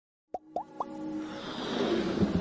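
Electronic intro jingle: three quick pops that glide upward in pitch, about a quarter second apart, followed by a swelling rise that grows louder.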